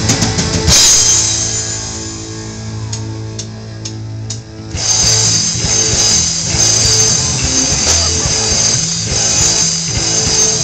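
Live rock band playing an instrumental passage on electric guitar, bass, keyboard and drum kit. About a second in the band stops on a held chord that rings down, four evenly spaced sharp clicks follow, and the full band comes back in at about five seconds.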